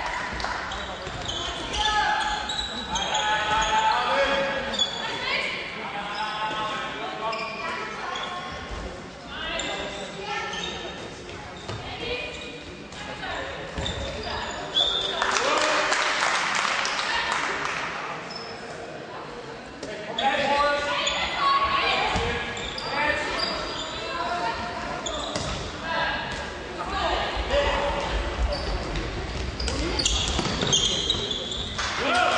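Sounds of a women's handball match in a sports hall: the ball bouncing on the court floor and players and spectators shouting, with echo from the hall. A louder rush of noise comes about halfway through.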